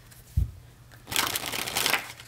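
A deck of tarot cards being shuffled by hand, the cards slapping and rustling through the fingers in a dense crackle over the second half. A dull thump about half a second in.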